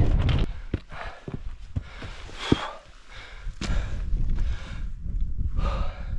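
Footsteps on loose rock, with stones clicking underfoot, as a hiker climbs a steep scree path. Two heavy breaths, one about two and a half seconds in and one near the end. A low wind rumble on the microphone at the start.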